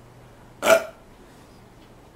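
A man's single short vocal burst, about two-thirds of a second in.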